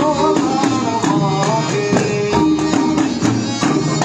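Live band music: a harmonium melody over hand drums keeping a steady beat, with a guitar.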